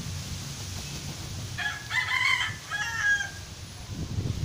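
A rooster crowing once, starting about one and a half seconds in and lasting just under two seconds, with a short break partway through.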